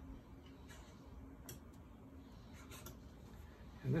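Faint rubbing and a few light, scattered clicks from hands working a Zeiss Axioplan 2 microscope's controls, as the analyzer slider is shifted from the lambda compensator to the plain analyzer.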